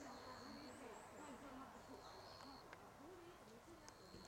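Near silence: faint outdoor ambience with a thin, high whistle-like call repeating about every two seconds and faint low wavering hoot-like sounds.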